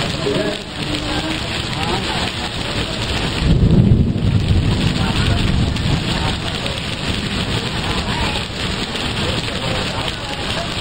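Heavy rain falling steadily as a freight train of container wagons rolls past. A louder low rumble swells about three and a half seconds in.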